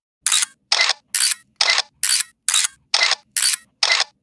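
Camera shutter sound effect clicking over and over, about two a second, nine times, alternating between a brighter and a duller click.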